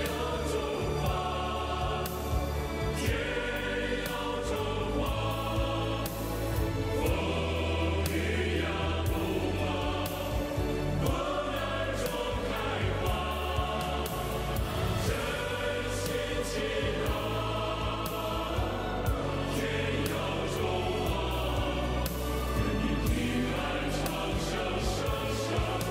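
A choir singing a patriotic song to China with instrumental backing, held notes running on without a break; its lyrics translate as lines such as 'In trials you blossom' and 'May you prosper in peace forever'.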